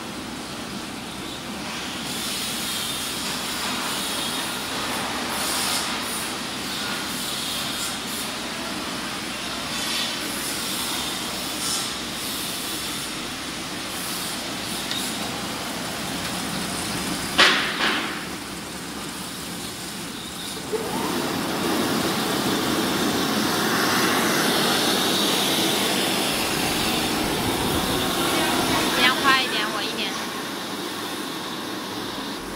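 YB-1450BG semi-automatic flute laminating machine running with a steady mechanical noise. There is a sharp clack a little past the middle, and the noise grows louder about two-thirds of the way through.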